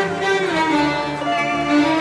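Bowed strings, violins to the fore, playing a flowing melody in the instrumental introduction to a song.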